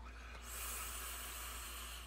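A long inhale drawn through a vape's mouthpiece: a steady airy hiss of air pulled through the atomizer, starting about half a second in.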